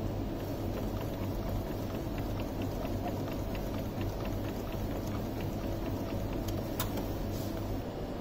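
Epson L130 inkjet printer printing a sheet of sublimation paper: a steady low mechanical hum with a quick, even run of faint ticks as the page feeds out, and one sharper click near the end.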